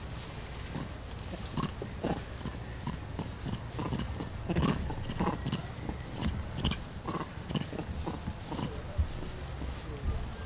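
Vervet monkeys chattering: a run of short, rapid calls, a few each second, from troop members still worked up after a fight.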